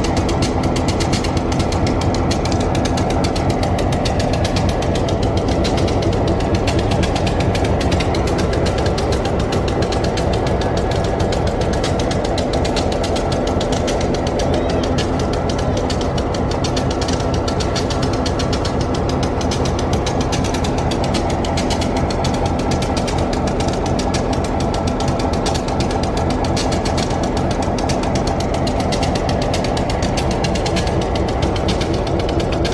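Steady mechanical running with a rapid, even pulse, engine- or compressor-like, holding the same level throughout.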